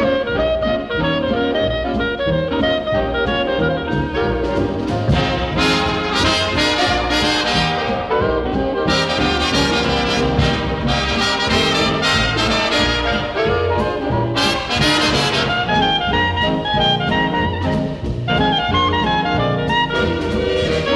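Background music: an instrumental passage of brass-led big-band music, with trumpets and trombones carrying the tune.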